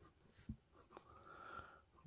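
Near silence with the faint scratch of a Waterman Carene fountain pen's gold nib writing on paper, a little stronger in the second half.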